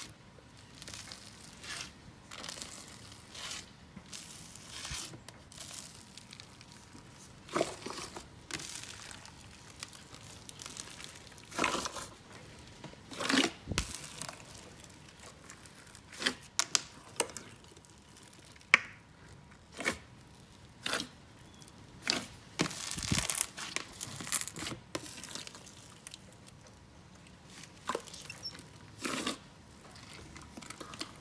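Hands kneading and stretching a large batch of bubbly clear slime in a plastic tub: irregular wet crackling and popping, with several louder bursts.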